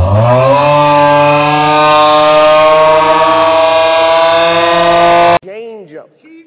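A loud, steady droning tone that glides up in pitch over the first second, then holds, and cuts off abruptly a little over five seconds in.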